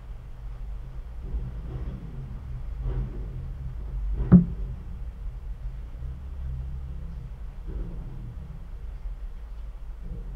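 Underwater sound in a water-filled glass tank, picked up by a hydrophone, as a smoothie bottle is held upside-down and emptied: a low steady rumble, with one sharp knock about four seconds in and a few fainter ones around it.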